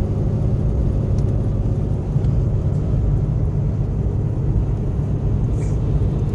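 Cab noise of a truck driving at road speed: a steady low rumble of engine and road noise with a constant hum.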